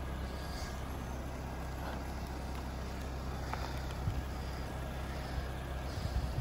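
Mahindra Thar's engine running steadily at low revs as the 4x4 crawls down a rough dirt track, a low drone.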